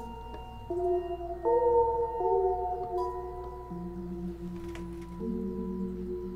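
Synthesizer melody part from Maschine instruments (Massive and Omnisphere): several sustained notes sound together and step to new pitches about once a second, with no drums.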